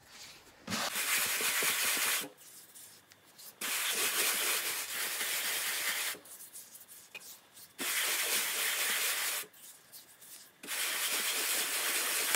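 Dry, dust-coated hands rubbing and brushing over a drying mud ball: a hiss of skin and fine dust on the hardened soil surface in four long strokes with short pauses between. This is the dusting stage that begins the polish of a hikaru dorodango.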